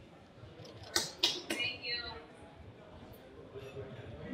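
Three sharp camera-shutter clicks about a quarter second apart, over faint voices in the room.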